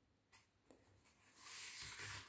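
Near silence, then a faint rustle of paper booklets sliding across a tabletop in the second half.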